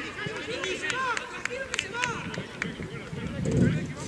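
Several voices shouting and calling out on a football pitch during play, some high-pitched, overlapping in short cries. A louder low rumble comes near the end.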